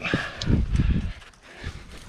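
Climbing boots and hands scuffing and knocking on loose limestone, with irregular bumps and scrapes close to the body-worn microphone, busiest in the first second.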